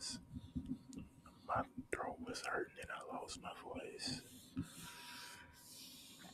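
Close whispering into the microphone, then, about four seconds in, steady scratchy rubbing from a cotton swab worked against a surface right at the microphone.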